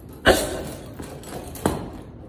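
A gloved overhand punch landing hard on a heavy hanging punching bag: one sharp thud about a quarter-second in, followed by a fainter knock about a second and a half later.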